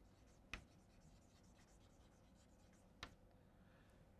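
Chalk on a blackboard, mostly very faint, with two sharp chalk taps, one about half a second in and one about three seconds in.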